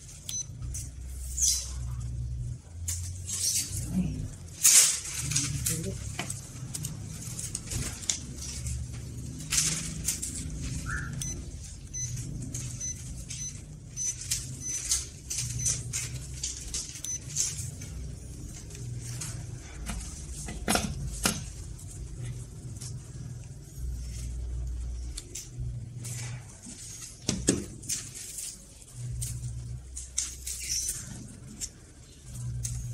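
Scattered clicks and knocks of multimeter test leads and probes being handled around a TV's LED driver power board, as the driver's backlight output voltage is about to be measured. A low humming bass runs underneath.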